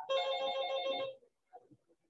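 Electronic phone ringtone sounding for about a second as a bright chord of steady tones with a fast pulse, then cutting off.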